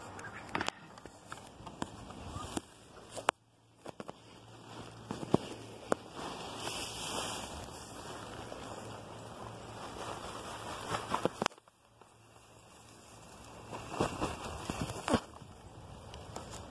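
Footsteps and rustling in dry chopped leaf mulch, with scattered sharp clicks and knocks from a handheld phone rubbing against clothing; the sound cuts off abruptly twice.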